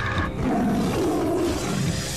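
Cartoon sound effect of a tiger roaring: one long, rough roar.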